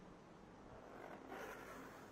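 Faint handling noise of a laptop being turned over and slid on a tile floor, a soft scrape swelling about a second in.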